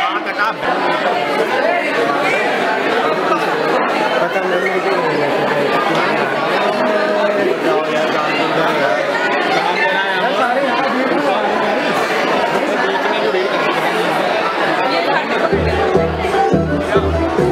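Chatter of many voices in a large hall, an audience talking among themselves. Just before the end, dance music with a heavy bass beat starts.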